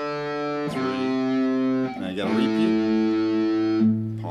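Electric guitar through a distorted amp playing single notes slowly one after another, each held and ringing for a second or more, the pitch changing three times.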